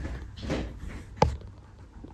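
Soft bumps of someone moving about the room, with one sharp knock about a second in.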